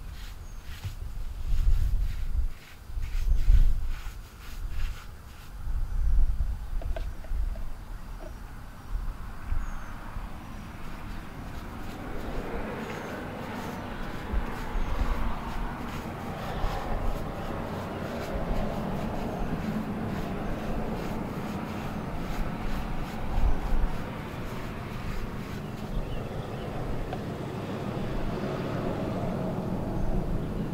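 Hand brush scrubbing a stone wall, with wind buffeting the microphone in uneven gusts through the first several seconds. From about twelve seconds in, a steady rumbling noise like a passing or idling vehicle rises and stays under the scrubbing.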